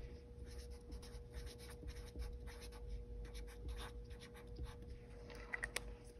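Black marker writing on paper: a quick run of short strokes as a name and date are signed.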